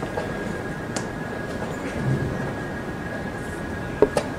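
A sharp tap from play at a tournament chessboard about a second in, with a softer thump near the middle, over a steady hall hum that carries a thin high whine.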